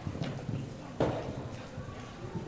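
A pony's hooves thudding on the sand of an indoor arena as it canters past, with one sharper knock about a second in.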